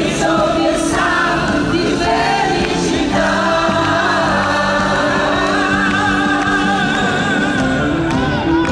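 A man and a woman singing a pop song live with a band, holding long wavering notes from about three seconds in.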